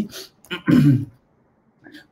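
A man clearing his throat once, briefly, about half a second in, followed by a second of silence.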